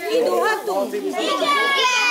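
A group of children talking and calling out over one another: several high voices overlapping at once.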